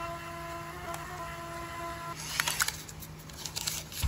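Thermal ticket printer feeding out a payout ticket: a steady motor whine over a low hum that stops about halfway through. Then come clicks and paper rustling as the ticket is pulled out and torn off.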